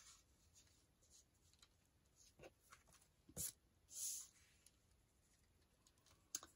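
Quiet handling of paper cards on a cutting mat: a few soft taps, a sharper tap about three and a half seconds in, and a brief paper slide or rustle just after.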